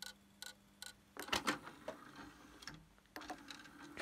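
Faint, repeated ticking from a CD player's disc mechanism as its laser pickup fails to read the disc. The ticks come about twice a second, with a rougher mechanical noise through the middle. Ticking instead of reading is typical of a weak or misaligned laser.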